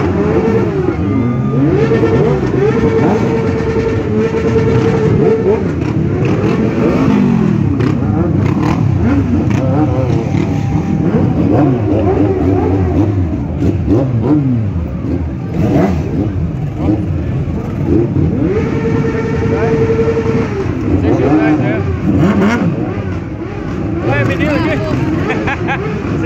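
Several sport motorcycle engines revving up and down as the bikes ride slowly past, one engine held at a steady high rev for a few seconds twice, early and again near the end. Crowd voices run underneath.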